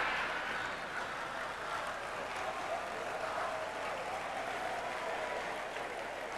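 A banquet audience applauding and laughing at a punchline: a steady wash of clapping and crowd noise that eases slightly as it goes on.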